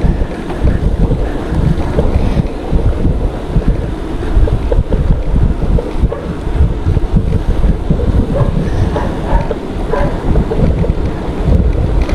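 Loud wind buffeting the microphone of a GoPro action camera on a moving bicycle: a dense, gusty low roar that rises and falls unevenly throughout.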